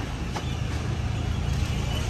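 Steady low rumble of a vehicle running, with a light click about half a second in as an SUV's rear door handle is pulled and the door opens.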